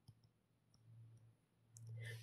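Near silence with a few faint, short clicks of a stylus on a tablet screen during handwriting.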